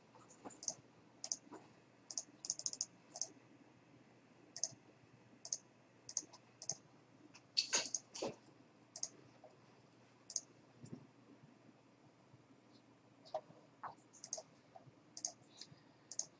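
Computer mouse clicking: a couple of dozen faint, irregular clicks, with a louder pair about eight seconds in.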